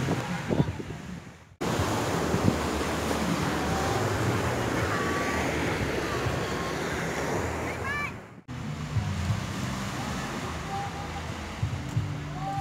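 Small waves washing onto a sandy beach, with wind on the microphone: a steady hiss of surf that cuts out abruptly twice where the recording is joined.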